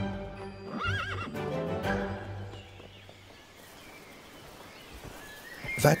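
A horse whinnies once, about a second in, over background music. The music falls away to a quiet hush in the second half.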